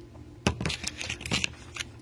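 A foil drink pouch crinkling as it is handled close to the microphone: a quick run of crackles starting about half a second in and lasting about a second, the first one the loudest.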